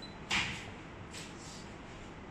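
Steady low background hum of a running machine, with one brief soft rustle about a third of a second in that fades within half a second.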